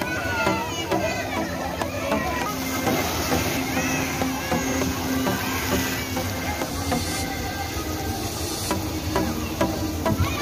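Many young children's voices calling out and playing in a pool, over background music.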